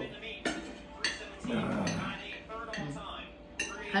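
Cutlery and dishes clinking at a dinner table as people eat, with about three separate sharp clinks: near half a second in, about a second in, and shortly before the end.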